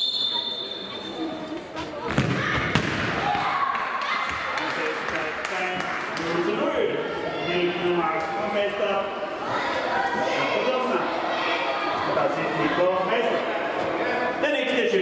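An indoor football struck hard by a kicker's foot about two seconds in: one sharp thud echoing in a large sports hall. Then the voices and chatter of children and onlookers carry on through the hall.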